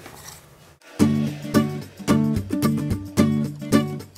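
Background music, a strummed acoustic guitar, starting about a second in after a brief quiet moment.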